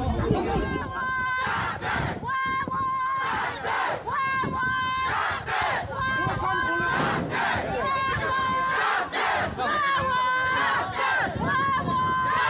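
A crowd of protesters shouting slogans in unison, in short held phrases that repeat about once a second.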